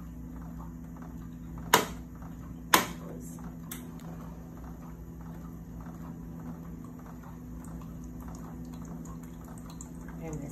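Dialysate trickling from a home hemodialysis machine's sample line into a small plastic cup, a sample of the fresh batch drawn for a color-chart check, over the machine's steady hum. Two sharp clicks about a second apart, about two seconds in, are the loudest sounds.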